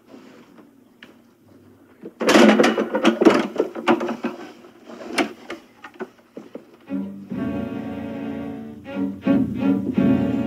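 A wooden chair clattering over onto the floor, a run of sharp knocks and bumps about two seconds in with a few more after. From about seven seconds in, low bowed-string music comes in and is held.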